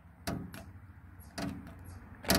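A hand-held squeegee pushed across wet window-tint film on the glass in two short strokes, a quarter second and about a second and a half in, working out the soap solution and bubbles under the film.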